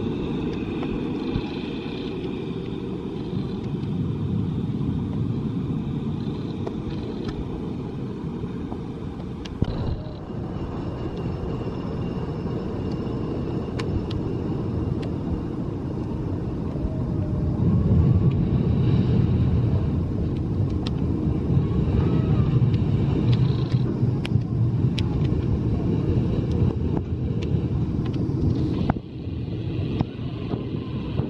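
Zierer steel roller coaster train rumbling along its track, growing louder in the second half as it passes closer.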